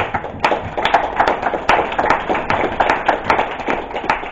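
Small audience applauding, with individual hand claps heard distinctly in a quick, irregular patter.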